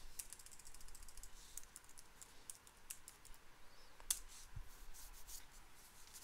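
Faint, sparse computer keyboard key clicks, with one sharper, louder keystroke about four seconds in.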